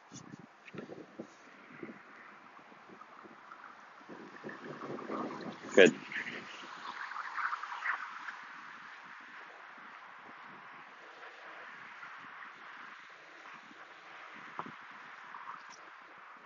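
Faint outdoor background noise with light wind on the microphone.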